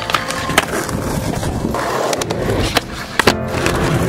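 Skateboard being ridden on concrete: wheels rolling with several sharp clacks of the board hitting down, and the deck sliding along a metal flat rail.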